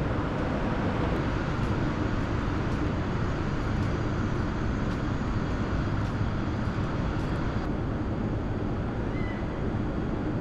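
Steady outdoor city background noise, a low rumble with a hiss, with faint ticks of footsteps for most of it and a brief faint chirp near the end.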